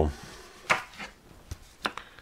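A few sharp clicks and handling sounds as a CD-R and its plastic case are handled. The two loudest clicks come about 0.7 s in and near the end.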